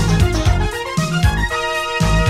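Instrumental passage of a late-1980s pop-funk song, with no singing: a heavy bass line with notes changing about every half second under sustained keyboard chords.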